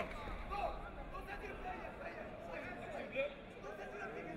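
Scattered, indistinct shouts and chatter from coaches and spectators in a large hall, none of it clear speech.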